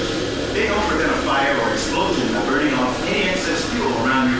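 Speech over a low, steady hum.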